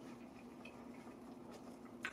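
Faint soft clicks and ticks of a man eating with dentures at the table, chewing and handling food, over a steady low hum.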